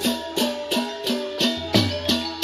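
Balinese gamelan playing a fast, even beat of about three strokes a second: clashing cymbals over ringing pitched gong notes, with drum.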